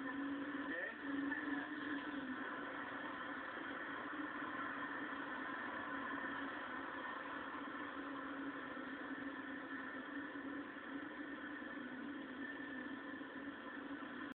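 Steady drone of a car's engine and road noise heard from inside the cabin, a low hum with a higher whine above it.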